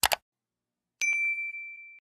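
A quick double mouse-click sound effect, then about a second in a bright notification-bell ding that rings on and slowly fades.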